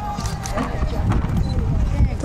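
Horse's hoofbeats on sand arena footing as it lands from a show jump and canters on: a few dull thuds.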